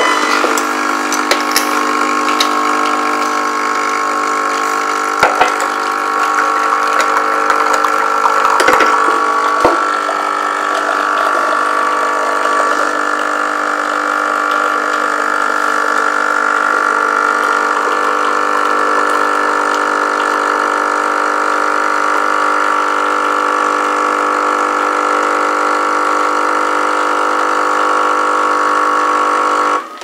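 Krups Nescafé Dolce Gusto capsule coffee machine's pump running with a steady buzzing hum while brewing coffee into a cup, cutting off suddenly near the end. A few sharp knocks come in the first ten seconds.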